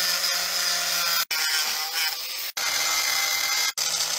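Angle grinder cutting into a metal safe's hinge: a steady, loud grinding whine of the disc on steel. The sound cuts out abruptly three times.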